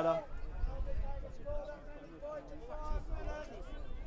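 Faint, distant voices of people talking at the ground, under a steady low rumble.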